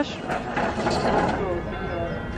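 Bells ringing on and on, faint over the steady background murmur of a café terrace and street.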